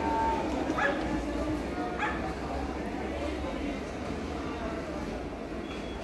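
Two short animal calls rising in pitch, about a second apart, over a steady low background hum.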